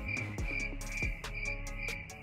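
A crickets sound effect, an even chirping about four times a second, laid over a background music beat with deep bass and clicking percussion. It is the stock crickets sound used to mark an awkward silence.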